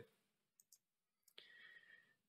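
Near silence, with a single faint click about one and a half seconds in as the presentation slide is advanced, followed by a faint brief hum.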